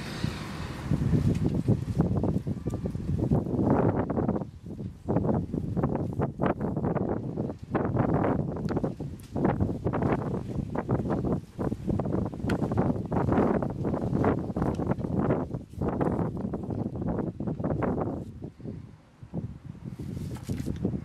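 Close, irregular rustling and crackling of hands working potting soil and handling thin plastic seedling pots, with a brief lull near the end.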